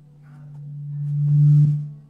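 A low, steady sustained note on a Nord Stage keyboard, held under the sermon, swelling to loud about a second and a half in and then dropping away quickly.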